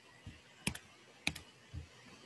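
Faint clicks from writing on a digital notebook: two sharp clicks about half a second apart, with a few soft low thumps.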